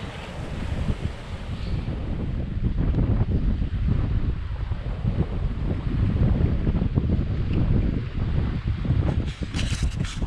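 Wind buffeting the microphone in gusts, over the rush of sea and water along the hull of a sailboat running downwind in a strong breeze. A few brief knocks near the end.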